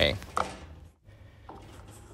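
A short click or two from a plastic gas-grill control knob being pushed onto its valve stem, followed by faint room tone.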